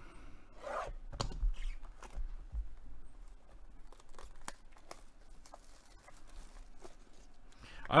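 Hands tearing and crinkling the wrapping on a Topps Rip baseball card box, scattered crackles and clicks of plastic and cardboard.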